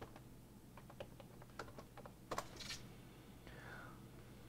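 Faint, irregular keystrokes and clicks on a computer keyboard as a search word is typed and entered, with a sharper click about two and a half seconds in.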